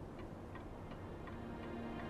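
Faint, regular ticking like a clock under soft background music, whose low held notes come in about halfway through.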